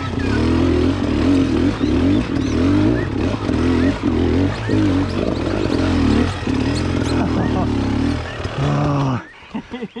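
Beta Xtrainer two-stroke enduro bike engine, heard up close, running at low speed with revs repeatedly rising and falling through tight, slow uphill pivot turns. The engine sound falls away about nine seconds in as the bike pulls up.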